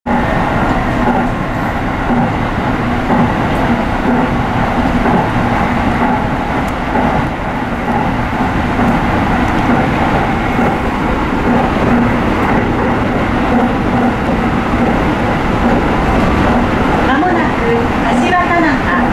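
Tsukuba Express commuter train heard from inside its rear cab while running on an elevated track: a steady rumble of wheels on rail with a constant hum. An onboard announcement begins about a second before the end.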